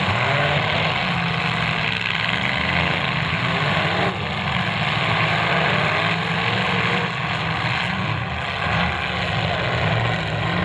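Several demolition derby car engines running and revving at once, a continuous din with pitches that rise and fall as the cars drive and push against each other on dirt.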